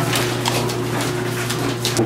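Paper banknotes being counted and flicked by hand, a series of irregular short papery clicks and rustles, over a steady low electrical hum.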